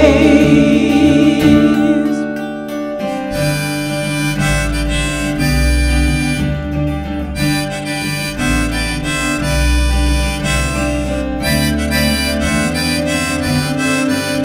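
Harmonica solo played over strummed acoustic guitar and a low bass line, taking over about three seconds in from the end of a held, wavering sung note.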